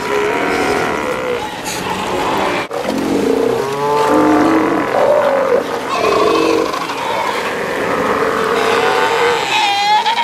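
South American sea lion colony calling: pups bleating and adults lowing in many overlapping calls, with a brief break about a third of the way in.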